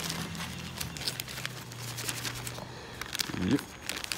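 Thin clear plastic bag crinkling as a fish finder display unit is handled inside it, in light, scattered rustles, with a low steady hum underneath through the middle.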